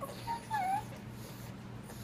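Pug whining twice in quick succession in the first second: a brief high whimper, then a longer one that dips in pitch and rises again. It is begging to be fed.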